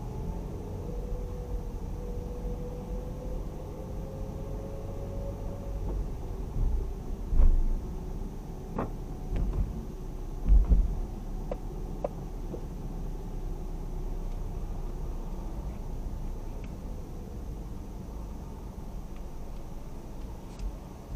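A car driving slowly through a multi-storey car park, heard from the cabin: a steady low rumble of engine and tyres, with a faint rising whine in the first few seconds. A couple of short heavy thumps come a little before and a little after halfway, the loudest near the middle.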